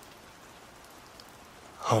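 Steady, faint rain falling, a continuous even hiss of drops; a man's voice begins just before the end.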